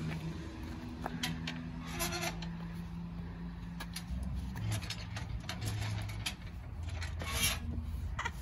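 A steady low engine hum, like a vehicle running, that drops in pitch about halfway through, with a few sharp clicks and clanks as an iron pedestrian gate is pushed open and swung.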